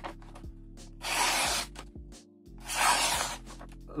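Knife blade, the S30V clip-point of a Benchmade 318 Proper, slicing through glossy catalogue paper in two strokes, about a second in and again near three seconds: a sharpness test of the blade's original factory edge.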